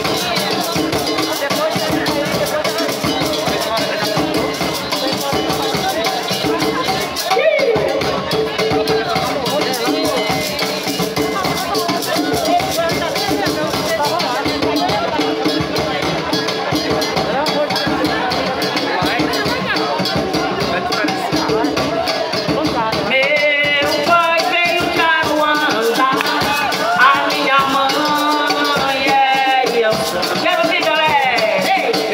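Live band music with a steady, quick rattling percussion rhythm and sustained instrument tones. Voices grow stronger about three-quarters of the way through.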